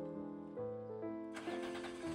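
Solo piano waltz playing throughout. About one and a half seconds in, a steady noisy rumble and hiss comes in under the music: a truck engine running.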